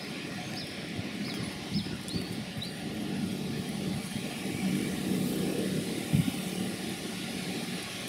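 Steady background rumble of traffic, swelling a little midway. A run of short, high chirps comes about twice a second in the first three seconds.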